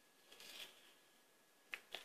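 Near silence with faint handling sounds: a soft, brief rustle about half a second in, then two quick faint clicks near the end.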